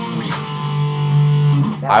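Electric guitar picked with a Pokémon card instead of a pick: a strum just after the start, then notes held ringing for about a second before they stop.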